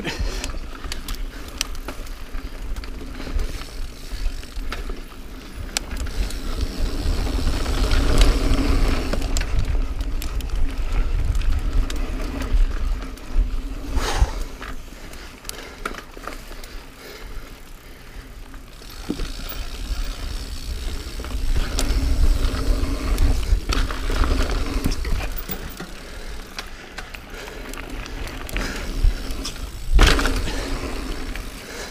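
Niner Jet 9 RDO mountain bike ridden over dirt singletrack, heard from its handlebar: tyres rolling on the trail, the bike rattling and knocking over bumps, and wind rumbling on the microphone. The noise swells and eases as the ride goes on, with a few sharp knocks.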